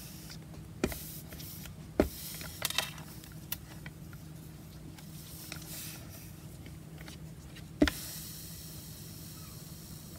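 A small travel iron pushed and pressed over cheesecloth on a board: quiet rubbing with a few knocks as it moves, the sharpest near the end, over a faint steady low hum.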